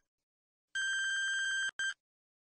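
Electronic beep sound effect: a steady single-pitched tone lasting about a second, then one short beep near the end.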